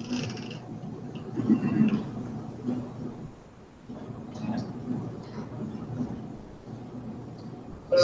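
Indistinct, low-level voice sounds and room noise, with no clear words.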